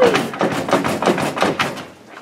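A locked door being rattled by its knob: a fast run of sharp clacks and knocks, about six a second, as the handle is twisted and the door shaken against its lock.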